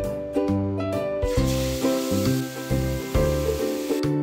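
Background music with a repeating bass line, and over it, from about a second in until about three seconds, the sizzle of marinated meat going into hot oil in a large cooking pot.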